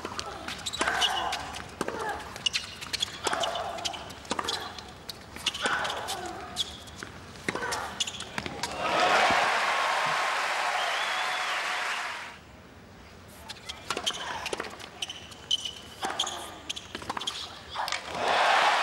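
Tennis ball struck by racquets and bouncing on a hard court during a rally, a string of sharp pops. About halfway through, the crowd applauds for around three seconds; after a short lull the pops of another rally follow.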